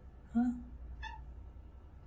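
A Siamese cat giving one short, high-pitched squeak about a second in, the excited sound these cats make when they spot a bug.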